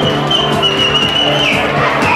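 Loud dance music playing, with a long held high note running through it that steps slightly lower about one and a half seconds in.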